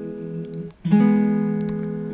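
Steel-string acoustic guitar: a plucked three-note major chord (root, major third, perfect fifth) rings and fades, then a new chord is plucked a little under a second in and rings on.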